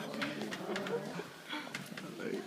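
A short laugh, then a background murmur of restaurant voices, with a few light knocks from the camera phone being handled and turned.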